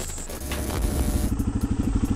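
Suzuki DR-Z400SM's single-cylinder four-stroke engine running with a steady, even pulse, heard through a helmet-mounted microphone.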